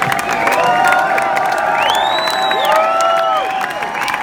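Concert audience cheering, shouting and whistling, with scattered clapping; one long high whistle rises and falls about two seconds in.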